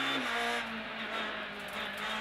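Honda Civic Type-R R3 rally car's 2.0-litre four-cylinder engine heard from inside the cabin, holding steady high revs. Just after the start the revs drop away and the engine note goes quieter.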